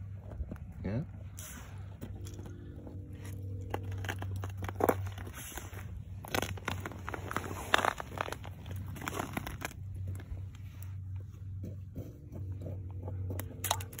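Irregular crunching and crackling on snow-covered ice beside an ice-fishing hole, over a steady low hum.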